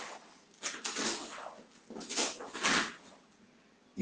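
A karateka in a cotton uniform moving through blocks and punches of a basic series: three short rushing noises, about one, two and nearly three seconds in, as he turns and strikes.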